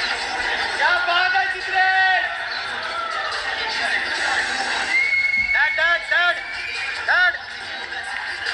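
Audience cheering with excited yells: a string of short, high, rising-and-falling shouts, and a long steady high note about five seconds in.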